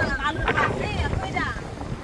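People talking, with wind buffeting the microphone.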